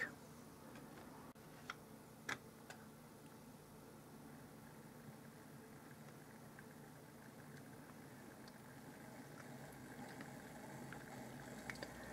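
Bachmann OO-gauge model GWR 4575 Class Prairie tank locomotive running slowly on a rolling road: a faint, steady motor hum, very quiet and smooth, with two sharp clicks about two seconds in. The hum grows slightly louder near the end.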